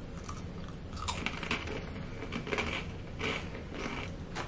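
Ring-shaped, crunchy pea-based Peatos chips being bitten and chewed: a run of irregular crisp crunches.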